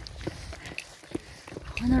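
Light footsteps on an asphalt road, a few short steps about half a second apart, under a low rumble of wind on the microphone. A voice starts speaking near the end.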